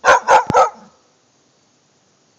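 Bull terrier barking three times in quick succession, then falling quiet; the owner takes her for upset at being shut in a pen.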